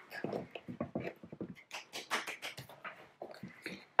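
Light clapping: a quick, uneven run of soft claps, with a few quiet words near the start.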